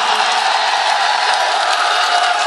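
Large crowd cheering and applauding in a steady dense roar of shouts and clapping, the audience's acclaim for a just-recited verse.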